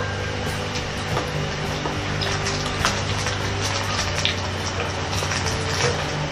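A steady low hum under an even hiss, with a few faint clicks.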